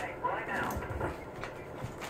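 Muffled, faint speech from a television playing in the room.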